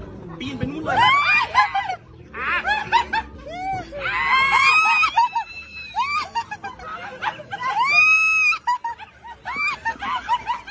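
Several people laughing and shrieking in bursts, with a long high-pitched squeal about eight seconds in.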